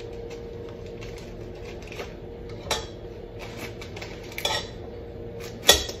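A paper butter wrapper being peeled and rustled over a stainless steel mixing bowl, with a few short crinkles and scrapes and a louder knock against the bowl near the end, over a steady low hum.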